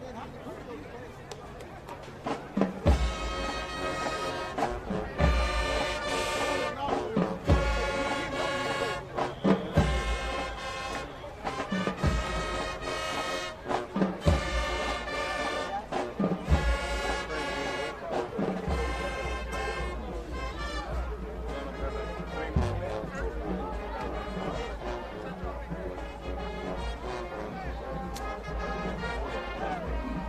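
Marching band playing brass and drums, a short phrase repeated over and over every couple of seconds, starting about three seconds in.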